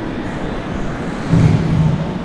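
Rumbling handling noise on a handheld camera's microphone as the camera is swung round, over steady room noise, with a louder low rumble about a second and a half in.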